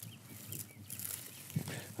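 Faint rustling and scraping as a shallot is pulled up by hand out of the mulched soil, its roots tearing free, with faint animal calls in the quiet farm background.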